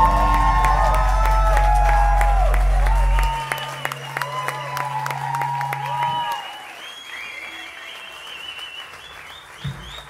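A live rock band's last sustained low notes ring out: the deepest cuts off about three seconds in and another about six seconds in. Audience applause, cheering and whistling run over them and thin out as the music dies away.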